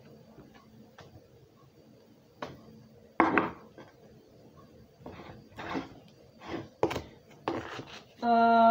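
Kitchen clatter: a spoon knocking in a steel pot, then a metal seasoning tin handled and set on a wooden board. A string of separate knocks and short scrapes, the sharpest about three seconds in.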